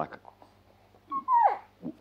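A short, high-pitched whimper about halfway through, sliding down in pitch.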